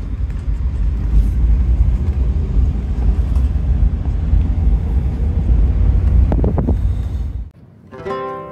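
Steady low rumble of a moving vehicle heard from inside its cabin: engine and road noise. It cuts off suddenly near the end.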